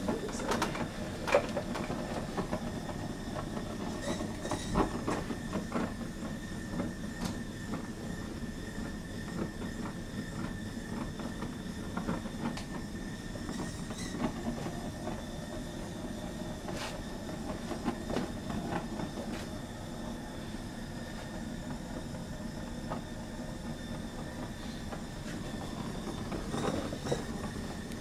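Hose-fed gas torch burning steadily as its flame is played over a heat-shrink sleeve on a power-cable joint, a continuous rushing flame noise with a faint steady high whistle. Scattered light clicks and knocks sound over it.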